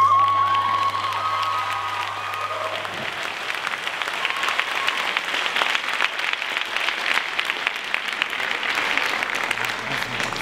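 Audience applauding, the dense clapping filling the hall. Over the first two or three seconds a long high note is held and then ends.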